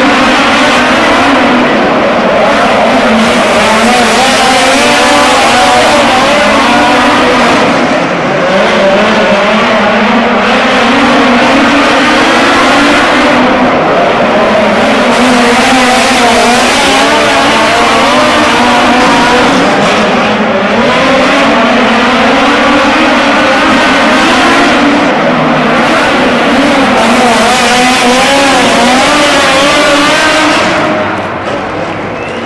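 Two dirt-track midget race cars running at full throttle side by side, a loud continuous engine sound whose pitch keeps rising and falling as the drivers lift and get back on the throttle through the turns.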